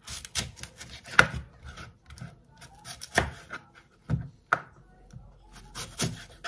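Kitchen knife slicing an apple on a plastic cutting board: crisp cuts through the fruit and several sharp, irregularly spaced knocks as the blade meets the board.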